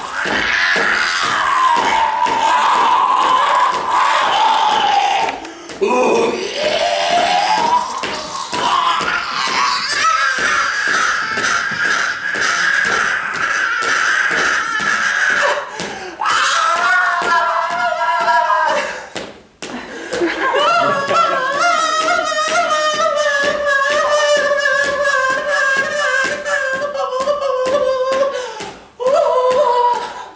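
French horn playing long held notes that slide up and down in pitch, in phrases broken by short pauses; in the later phrases several pitches sound together.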